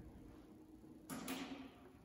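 A sudden short swish of noise about a second in, with two sharp onsets close together, fading away within about half a second.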